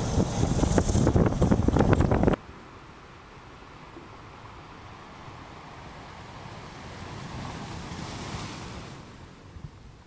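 Wind buffeting the camera microphone in loud, rough gusts for about two seconds, then cutting off suddenly. A much fainter steady rush follows, swelling a little near the end before fading.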